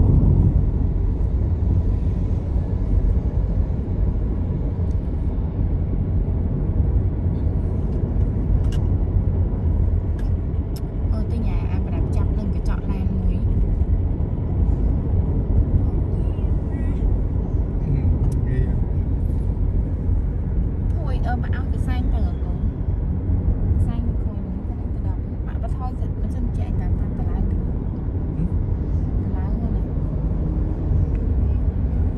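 Steady low rumble of road and engine noise heard from inside a moving car's cabin.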